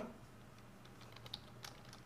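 A few faint, scattered clicks of computer keyboard keys being pressed.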